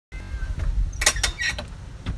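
Creaking and clicking: a cluster of sharp clicks about a second in, over a low rumble.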